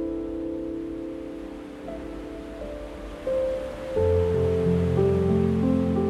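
Slow, gentle solo piano music over a soft wash of ocean waves; deeper bass notes come in about four seconds in and the music grows louder.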